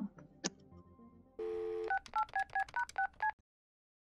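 Telephone: a click, then a brief steady dial tone, then about seven quick touch-tone keypad beeps as a number is dialled, each beep a pair of tones; the sound cuts off suddenly after the last one.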